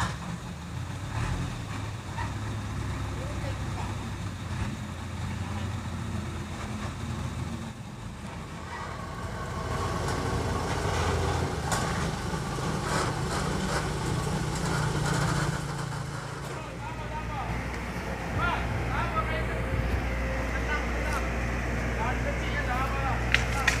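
A heavy vehicle's engine running steadily with a low drone, with people talking over it, mostly in the second half.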